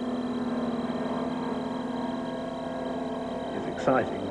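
Airship's engines and ducted propellers running with a steady, even drone as it lifts off.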